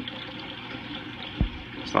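Steady rush of flowing water from a reef aquarium's circulation, with one short low thump about one and a half seconds in.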